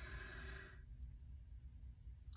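A single breath close into the microphone, fading out about a second in, followed by faint low room hum.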